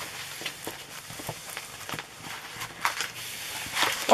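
Light rustling with scattered soft clicks as a rolled diamond painting canvas and its plastic cover film are handled and smoothed flat by hand.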